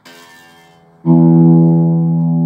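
Electric guitar: the open low E string is picked, the first note of the E minor pentatonic scale. It sounds faintly at first, then about a second in it is picked hard and left ringing loudly.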